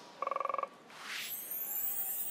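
Broadcast graphics sound effects: a rapid electronic buzzing trill lasting about half a second, then a whoosh as the on-screen graphics change.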